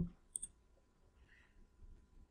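A short computer mouse click about half a second in, otherwise near silence.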